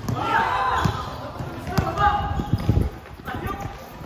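A basketball being dribbled on a hard court, several bounces thudding at an uneven pace, while players shout and call to each other.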